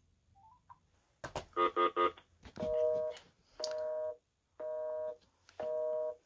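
Phone on speaker returning a busy signal after a few taps and a quick run of three beeps: a low two-tone buzz pulsing about once a second, four times. The number dialled is not getting through.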